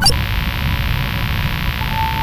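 Static hiss like a lost video signal, cutting in suddenly with a click and holding steady over a low hum. A steady beep-like tone joins near the end.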